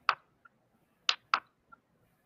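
Sharp computer mouse clicks: one just after the start, then a pair about a second in, each pair a quarter second apart, with two faint small ticks between.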